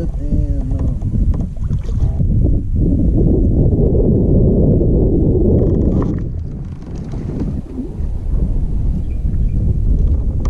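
Wind buffeting the microphone over a kayak on open water. It is loudest for about three seconds in the middle, then eases.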